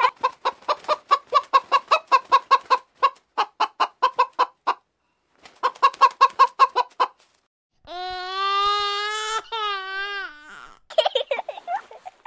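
Hen clucking in quick runs of about five clucks a second, with a short pause, then a long drawn-out call of nearly three seconds that drops in pitch at the end.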